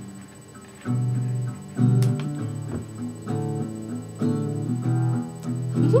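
Acoustic guitar strumming chords in a steady rhythm, starting about a second in.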